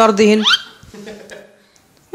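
Speech: a cartoon character's voice finishing a line in Hindi with a quick upward-gliding sound about half a second in, then fading to quiet.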